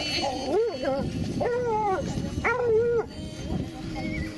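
An animal whining in three drawn-out calls, the first rising and falling and the other two held at a steady pitch.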